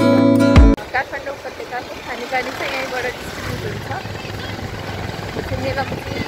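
Strummed acoustic guitar music cuts off suddenly under a second in, giving way to street ambience: people's voices talking a little way off over a low traffic rumble.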